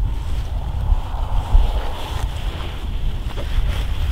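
Wind buffeting the microphone: an uneven low rumble that rises and falls with the gusts, over a faint steady hiss.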